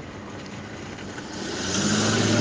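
A low motor drone with rushing noise swells up about halfway through, over a faint hiss.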